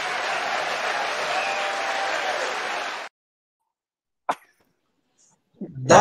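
Theatre audience applauding and cheering, cutting off abruptly about three seconds in. Then silence with a single short click, and a man starts speaking near the end.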